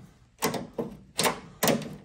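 Sharp metal clicks and knocks from a Camaro door's outside handle mechanism and linkage being worked into place inside the door, about four clicks, two of them close together near the end.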